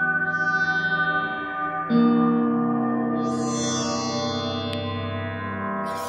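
Improvised experimental music for electric guitar and computer-generated tones (Csound): layered sustained notes hang and overlap, a new chord-like note enters sharply about two seconds in and slowly fades.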